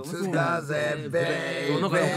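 A man's voice singing unaccompanied in a drawn-out, chant-like way, holding one note for about half a second midway.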